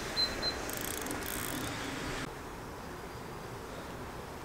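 Fishing rod and reel being handled: a short run of fine, fast mechanical clicking about a second in, then a quiet outdoor background.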